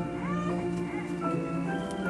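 Organ and piano playing slow hymn music in long held chords, with a short, high, gliding squeal about a quarter second in.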